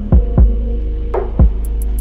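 Background music: an electronic beat with deep bass drum hits that drop in pitch, over a steady low bass.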